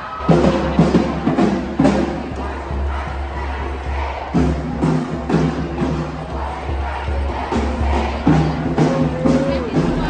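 A marching crowd of protesters chanting in unison, the chant repeating in a steady rhythm.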